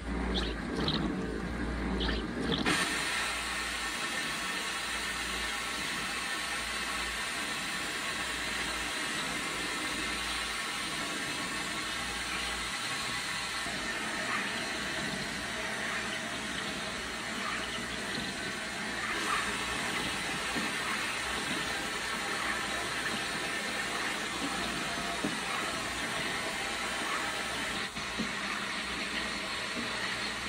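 Vapor blaster nozzle hissing steadily as a wet abrasive slurry is sprayed onto a wire bingo cage in a blast cabinet. There is more low rumble in the first three seconds, then an even hiss.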